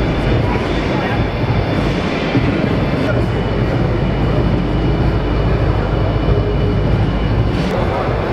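Steady, loud crowd din in a large indoor exhibition hall: many overlapping voices with a low rumble, and no single sound standing out.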